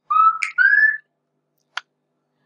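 Someone whistling two short notes, the second one longer and gliding upward, followed by a single short click near the end.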